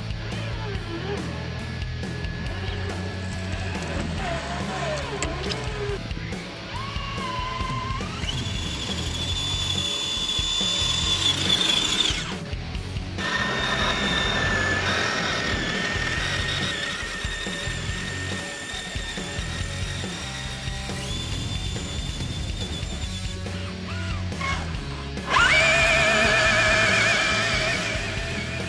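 Background music with a steady beat, over the high whine of an RC crawler truck's electric motor that rises in pitch as it speeds up, holds steady, and comes back loudest in a sudden burst near the end.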